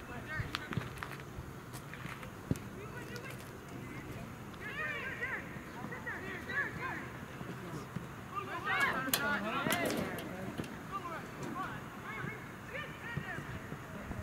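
Distant voices calling and shouting across a soccer field during play, loudest about nine seconds in, with a few sharp knocks in between.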